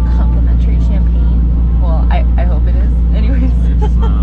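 Loud, steady low engine rumble in a train car, with a fixed low hum. A woman's voice talks over it, her words mostly buried.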